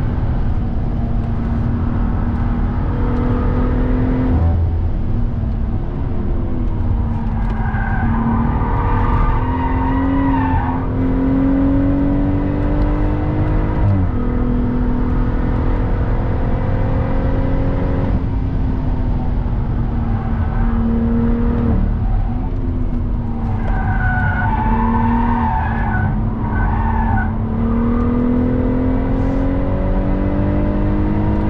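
BMW M140i's 3.0-litre turbocharged straight-six heard from inside the cabin under hard track driving, its revs climbing steadily and dropping sharply three times. Tyres squeal twice through corners, about eight seconds in and again around twenty-four seconds.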